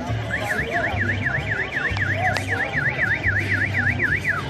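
An electronic siren-like tone warbling rapidly up and down, about four times a second, starting shortly after the start, over music with a heavy repeating bass beat.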